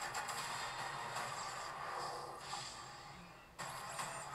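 Film trailer soundtrack playing from speakers: a steady rushing sound-effect bed with faint music. It fades and cuts off sharply about three and a half seconds in.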